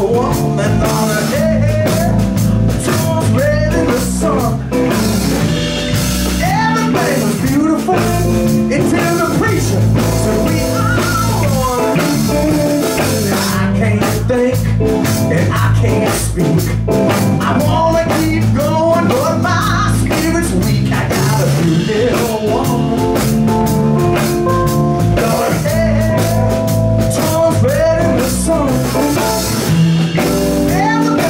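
Live blues band playing: an electric guitar playing lines that bend in pitch over electric bass and a drum kit, at a steady loud level.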